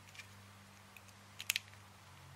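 Faint clicks from a resistor and test probe being handled, two close together about one and a half seconds in, over a low steady hum.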